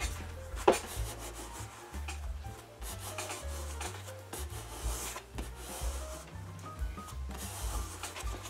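Hands rubbing and sliding over automotive vinyl, smoothing it across a foam seat base, in a run of short scuffing strokes, with one sharp slap just under a second in. Background music plays under it.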